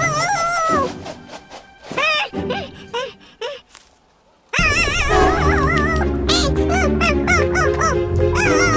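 Cartoon soundtrack music with a warbling melody and small creature-like vocal sounds. It thins out to a few short, scattered notes and drops to a brief near silence about four seconds in, then a fuller, louder tune starts.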